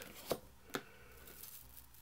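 Cardboard trading cards being shifted through the hands, with two faint light card clicks, the first about a third of a second in and the second just before the middle.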